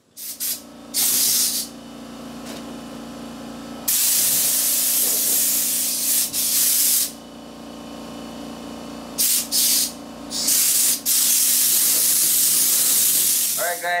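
Compressed air hissing from an air blow gun in repeated bursts, one long blast of about three seconds and several short ones, over a steady low hum. The air is blowing dust off a sanded, masked-up vehicle body before it is cleaned and sprayed.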